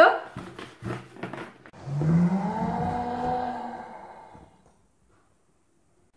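Paper handled with short rustles and crinkles, then a woman's long drawn-out wordless exclamation of delight. It rises in pitch, holds, and fades away over about two and a half seconds.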